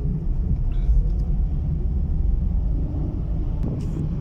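Steady low rumble of a car's engine and tyres on the road, heard from inside the cabin while driving.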